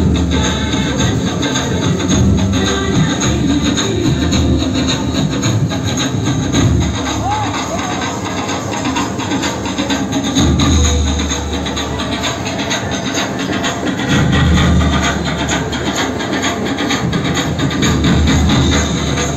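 Loud music with dense, fast percussion, with voices mixed in, accompanying the dancers.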